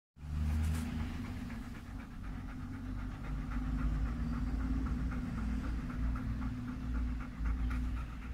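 Golden retriever panting rapidly, about five pants a second, close to the microphone, over a steady low hum.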